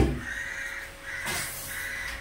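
A crow cawing three times in quick succession, harsh calls, after a sharp knock at the very start.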